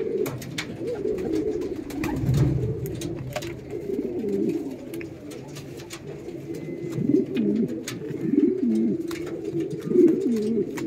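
Several caged domestic pigeons cooing at once, their overlapping coos rising and falling without a break and clearest near the end. Scattered light clicks sound among them.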